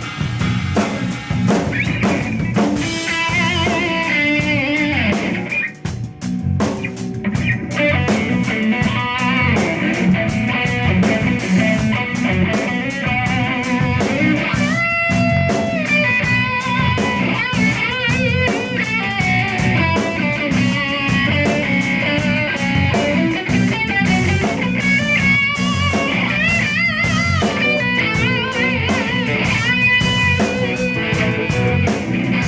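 A live rock band jamming: electric guitar over a drum kit with steady cymbal strokes, the guitar playing wavering, bending notes. The music drops out briefly about six seconds in, then carries on.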